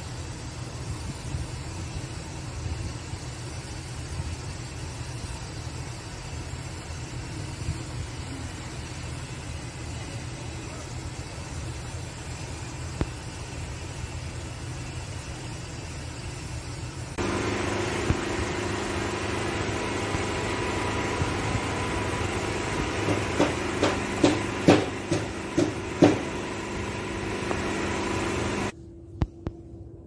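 Steady low machinery rumble. About seventeen seconds in it switches abruptly to a louder, steadier machine hum, with a run of sharp knocks in its later part; the hum cuts off just before the end.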